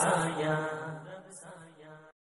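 The closing held note of a devotional naat's chanted refrain, with its steady low drone, dying away and fading out as the naat ends.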